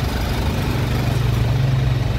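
Car engine idling steadily, with the air-conditioning blower running on its newly fitted blower motor.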